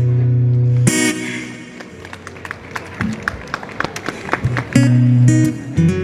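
Acoustic guitar playing a loud, held strummed chord that is cut off sharply about a second in. A quieter stretch with light clicking taps follows, and strummed chords come back loudly near the end.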